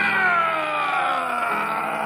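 A person's long, drawn-out mock-horror scream, sliding slowly down in pitch and easing off toward the end.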